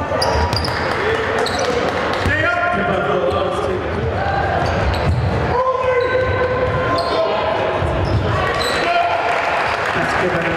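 Game sound in a basketball gym: a basketball bouncing on the hardwood, sneakers squeaking in short high chirps, and players and spectators calling out, all echoing in a large hall.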